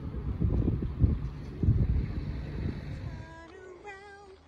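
Wind buffeting a phone's microphone outdoors, gusting unevenly. It stops about three seconds in, and a few short pitched voice-like notes follow near the end.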